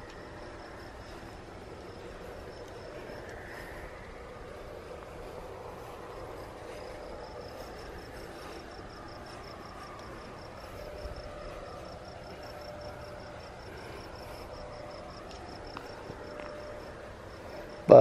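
Crickets chirping in a steady, evenly pulsed high trill over a faint outdoor background hum.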